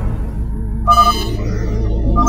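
Sci-fi spacecraft sound effects: a low steady rumble, with a short electronic beep about a second in.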